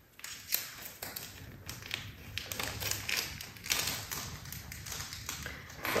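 Small plastic bag crinkling and rustling with irregular crackles and clicks as it is picked and pried open by hand.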